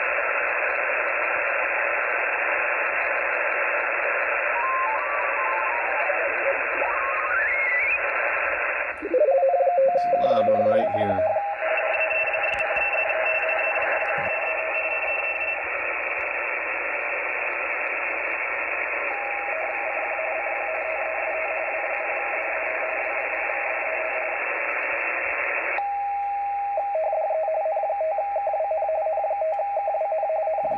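Xiegu G90 HF transceiver's speaker playing 20-metre band hiss, with a tone stepping upward about halfway through the first third and a loud, garbled, warbling signal around a third of the way in. Later a radio teletype (RTTY) signal comes through: a two-tone frequency-shift warble that is intermittent at first and then strong and continuous for the last few seconds, a station calling CQ.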